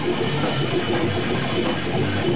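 A rock band playing live and loud: electric guitars through Marshall amplifiers over a full drum kit, keeping a steady unbroken level.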